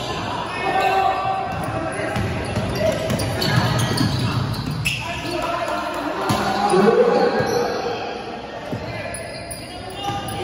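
Basketball bouncing on a hardwood court during a game, with players' voices calling out, in an echoing gym.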